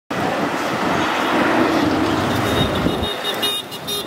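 Street traffic noise from auto-rickshaws and cars running, with a horn sounding several short toots near the end.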